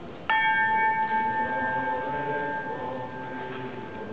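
A single strike of the command bell on a Málaga processional throne, a signal to the bearers: one bright metallic clang about a third of a second in, then a ringing tone that fades slowly over about three seconds.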